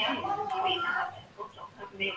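A faint, choppy voice coming through a video-call connection, in short broken fragments that fade out about a second in.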